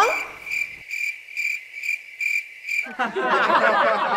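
Cricket-chirp sound effect marking an awkward silence: a steady string of high chirps, about two and a half a second, for about three seconds. It gives way to laughter near the end.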